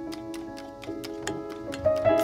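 A fork clicking rapidly against a stainless steel bowl while whisking crepe batter, about five clicks a second, over soft background piano music.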